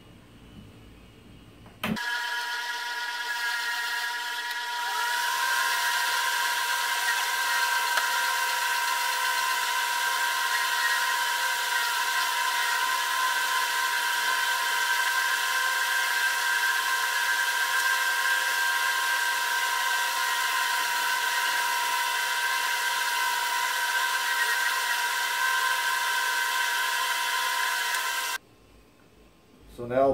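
Benchtop oscillating spindle sander running with a steady hum and whine, used to sand cigar-rest grooves into the rim of a log ashtray. It starts a couple of seconds in, gets a little louder a few seconds later as the work goes on, and cuts off shortly before the end.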